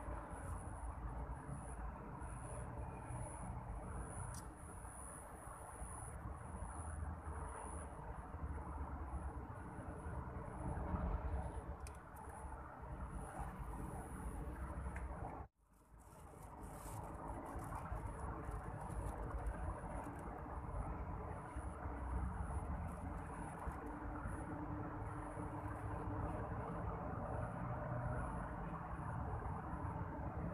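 Steady outdoor background: a low rumble under a thin, high insect drone, cutting out abruptly for a moment about halfway through.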